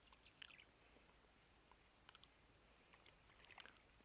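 Near silence: faint outdoor background with a few faint scattered small ticks.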